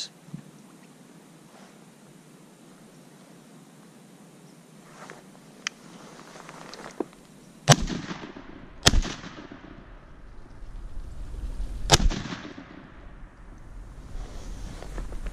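Three shotgun shots, the first two about a second apart and the third about three seconds after, each with an echoing tail.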